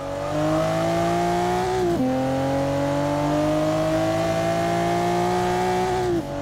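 A car engine accelerating, its pitch climbing steadily; about two seconds in it drops sharply, as at a gear change, then climbs again.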